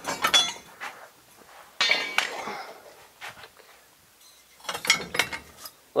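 Loose metal suspension and brake parts clinking and clattering as they are handled in a pile. There are three bursts: one at the start, one about two seconds in with a short metallic ring, and a cluster of light knocks near the end.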